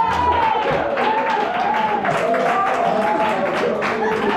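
Audience clapping, with several voices over the applause.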